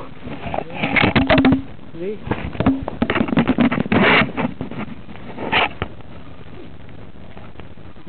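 A rapid series of knocks, scrapes and rustles as the camera tumbles to the ground in a rider's fall, mixed with short grunts or voice fragments, stopping about six seconds in.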